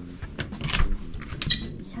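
A bathroom door being opened by its lever handle: a few short latch clicks and rustles, with a brief high squeak about one and a half seconds in.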